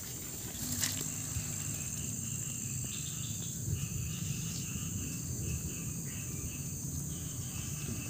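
A steady high-pitched drone of insects in dense tropical undergrowth, with short repeated chirps coming and going in a lower register and a low steady noise underneath.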